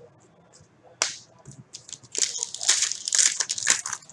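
Foil trading-card pack wrapper crinkling and crackling in the hands. A single sharp crackle comes about a second in, then a dense run of crinkles fills the second half.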